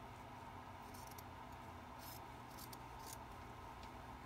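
Scissors cutting through eyelet lace fabric: several faint, short snips spread over a few seconds.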